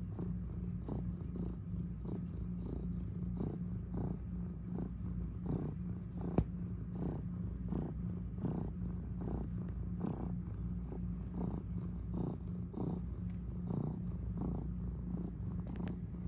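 Domestic cat purring steadily close up, the purr pulsing in and out with its breathing while it kneads a fleece blanket. A single sharp click stands out about six seconds in.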